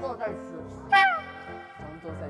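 A cat-like meow, a loud falling cry about a second in, preceded by a shorter falling cry near the start. Background music plays underneath.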